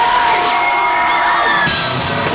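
Rock concert crowd cheering and screaming, with high held and falling yells, as the band starts its opening song. The band comes in fuller and louder near the end.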